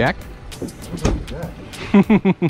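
Men's voices on a fishing boat: a called-out question at the start, then more short talk over a low background rumble.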